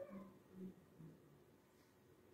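Near silence: room tone, with a few faint, brief low tones in the first second or so.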